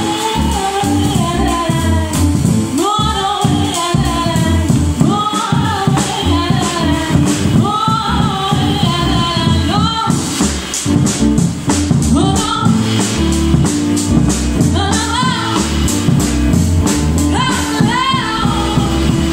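Live jazz trio: a woman singing lead over drum kit and electric keyboard. The vocal comes in phrases with sliding, bending notes; about ten seconds in she pauses briefly while quick cymbal and drum strokes come forward, then she sings on.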